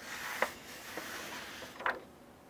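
Paper rustling as hands smooth and handle the pages and cover of a paperback instruction manual, with two small sharp ticks, one about half a second in and one near the end.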